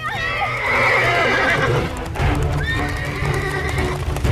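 A horse's whinny: one long, shrill, wavering call over the first two seconds or so. Heavy hoofbeats follow as the horse bolts with the cart.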